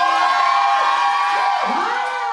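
Audience cheering, with many high voices shrieking and whooping over one another.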